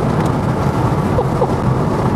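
Steady road, tyre and wind rumble inside the cabin of a 1969 Porsche 911 converted to electric drive, with no engine or exhaust note, because the car runs on an electric motor.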